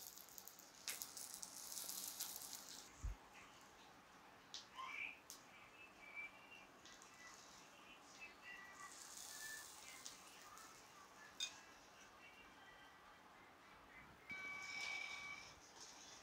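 Near silence: faint room sound with a few soft knocks and clicks from handling.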